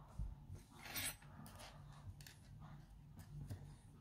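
Faint rustling and light scraping from hands handling a knitted swatch on its needle, the strongest scrape about a second in, over a low steady hum.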